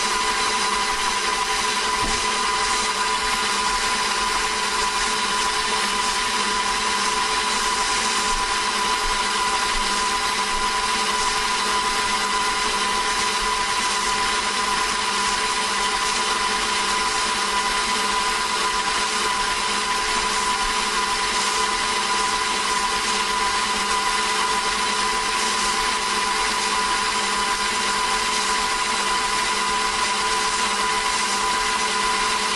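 KitchenAid stand mixer running steadily, its motor giving a constant whine as the rubber-edged beater blade turns through cake batter in a stainless steel bowl.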